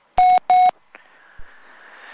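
Two short, loud beeps of a steady mid-pitched alert tone from the cockpit avionics, heard through the headset intercom, a third of a second apart; at this point in the run-up it is the autopilot disconnect tone sounding at the end of the autopilot check. A faint hiss follows.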